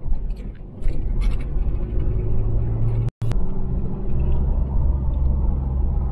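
Car engine and tyre rumble heard from inside the cabin while driving on a paved road, a steady low drone, broken by a momentary dropout about halfway through.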